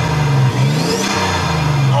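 Twin-turbo Toyota 2JZ-GTE straight-six revved in blips, its pitch climbing over the first second and then falling away, with a faint rising whistle as the revs climb. The engine runs on newly rebuilt turbos and has a slightly blowing exhaust gasket.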